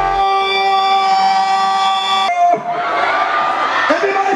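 Live concert sound: the backing track's bass drops out and a single long held note rings for about two seconds, then cuts off suddenly into crowd cheering and shouting.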